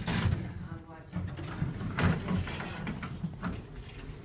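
Jolley elevator's doors sliding open after the call button is pressed, over a low rumble, with a knock about two seconds in.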